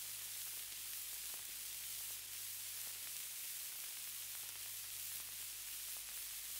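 Faint record player surface noise: a steady hiss with a low hum and a few scattered faint crackles.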